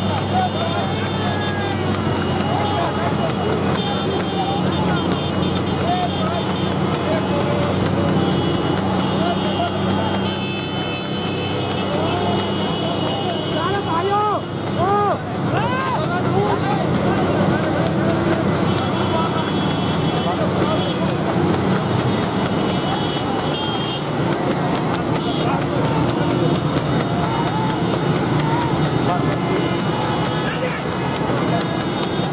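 Several motorcycle engines running together, with men shouting and calling over them and horns sounding on and off.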